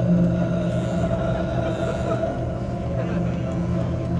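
Electric hair clippers buzzing steadily close to a stage microphone, a low humming drone with little change.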